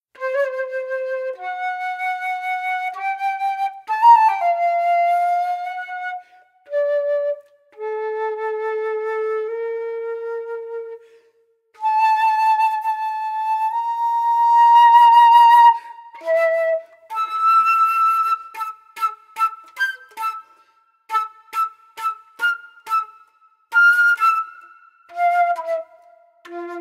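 Solo silver concert flute playing unaccompanied: a slow line of long held notes with a few short breaks, then, in the second half, a string of short detached notes.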